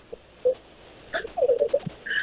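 A person's voice over a telephone line: quiet line hiss with a brief hummed 'mm' about half a second in and a low, wavering murmur over the second half.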